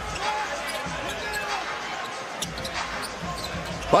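Basketball dribbled on a hardwood court in an arena, a few irregular bounces, with crowd voices behind.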